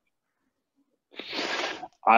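A short, noisy burst of breath from a person, starting about a second in and lasting under a second.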